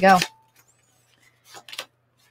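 Tarot cards being dealt onto a table: after a short quiet, a few faint, quick card slaps and slides about one and a half seconds in.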